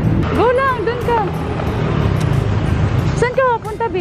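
Background song with a singing voice in two phrases, one near the start and one near the end, over a steady low rumble of wind and road noise on the microphone.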